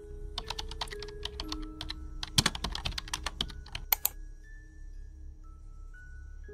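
Computer keyboard typing: a quick run of key clicks lasting about four seconds, thickest in the middle, ending in two louder clicks. Soft background music with held tones plays underneath.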